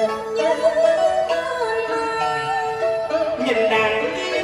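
Live vọng cổ singing over instrumental backing, with long held notes that waver in vibrato.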